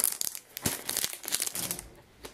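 Packing material crinkling as it is handled, in a quick irregular run of crackles that fades near the end.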